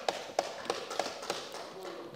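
Members thumping their desks in approval: a scattered run of taps and thuds, roughly three a second, with faint voices underneath.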